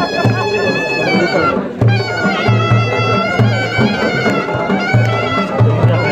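Chitrali folk dance music: a surnai (shawm) plays a sustained, gliding reedy melody over a dhol drum beating a steady dance rhythm.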